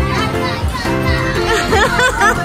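Carousel music with a steady beat, and children's voices calling out over it in the second half.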